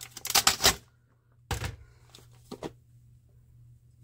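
A clear plastic food container crackling and clicking as it is opened and handled, in a quick flurry during the first second, then a single sharp knock about a second and a half in and two small clicks shortly after.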